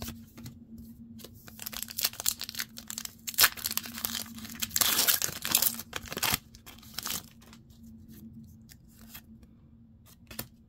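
A foil Pokémon booster pack wrapper being torn open and crinkled, with the loudest tearing about five to six seconds in, among short clicks of cards being handled.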